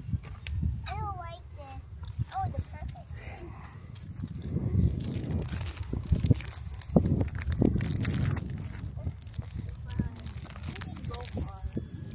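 Wind rumbling on the microphone, with short bits of children's voices and rustling and handling noise as strawberries are picked.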